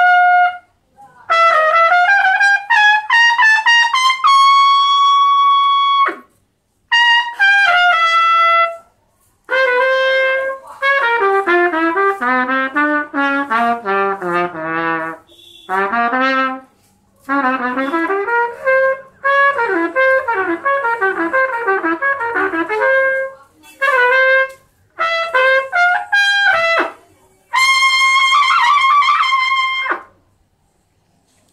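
Solo trumpet playing a melody in phrases broken by short pauses. It holds a long note about four seconds in, plays quick falling runs in the middle, and holds another long note near the end.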